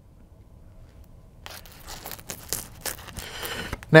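Plastic wrapping on a CD box set being slit with a small knife and torn open, crinkling with small irregular clicks. The tearing starts about a second and a half in, after a quiet pause.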